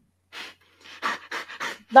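Breathy, stifled laughter: a run of short unvoiced puffs of breath, coming faster after the first second.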